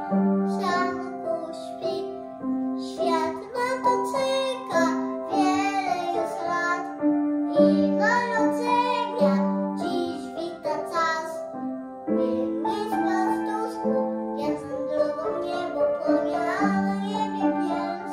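A young boy singing solo a Polish Christmas carol, accompanied on an upright piano, with long held notes in the melody.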